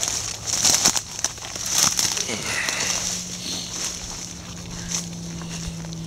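Dry branches and leaves rustling and crackling against the body and camera as someone pushes on foot through hand-cut brush. It comes in bursts, loudest in the first three seconds, then eases as the brush gives way to open ground.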